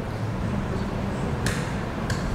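Steady low room hum picked up by the open meeting microphones, with a single sharp click about a second and a half in.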